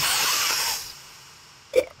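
A person's breathy hiss through the mouth as he sips strong liquor, fading away over about a second, followed near the end by a short throaty sound.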